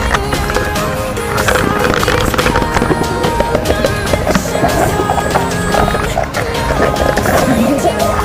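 Background music over the churning and splashing of water around a camera as it dips in and out of a waterfall pool.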